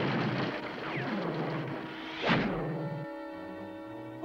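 The tail of a cartoon explosion sound effect dying away, with a second sudden whoosh falling in pitch about two seconds in. Sustained music chords come in near the end.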